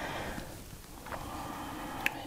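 Faint scrubbing of a fine paintbrush working metallic watercolor in its pan, with a light tick about a second in.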